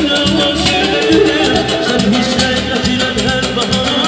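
Live Azerbaijani wedding-band music: a male singer singing into a microphone over electric guitar and a frame drum keeping a steady, quick beat.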